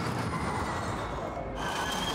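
Formula E electric race cars running on track: a high electric motor whine over a wash of tyre and wind noise. About three-quarters of the way in the sound changes abruptly to a steadier, higher whine.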